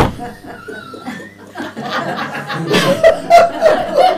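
A man chuckling and laughing, the laughter growing louder in the second half. A sharp click right at the start.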